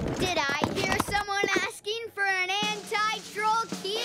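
A cartoon child's voice singing a wordless tune, its pitch wavering and wobbling, in short phrases.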